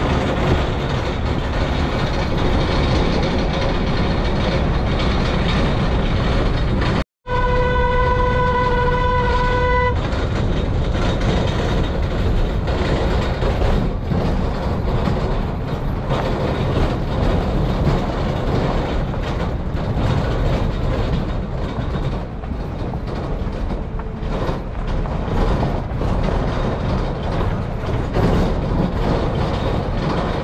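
Steady rumble of a vehicle driving over a rough dirt road, tyres on loose stones and ruts. A horn sounds one steady tone for about two and a half seconds, starting about seven seconds in.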